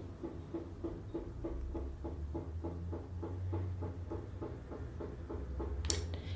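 Faint steady background hum with a soft pulse repeating about three to four times a second, from some machine running in the room.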